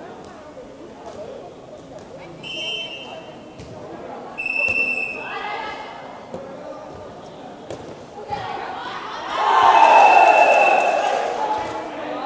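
Air-volleyball match sounds: the ball being struck and bouncing, short high whistle blasts, and players' and spectators' voices that swell loudest near the end.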